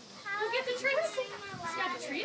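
High-pitched children's voices talking and chattering, unclear words with no other distinct sound above them.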